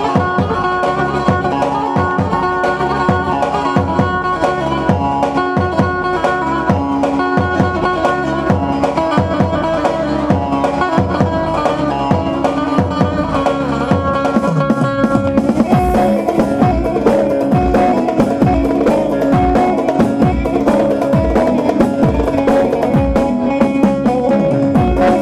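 Kurdish halay dance music played by a live wedding band, with a steady drum beat under a pitched melody. About two-thirds of the way through, the drum beat gets heavier.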